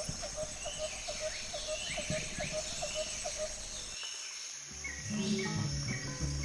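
Outdoor bush ambience: a bird repeating a short note about four times a second, other birds whistling, and a steady high insect drone. Near the end, music with a bass line comes in.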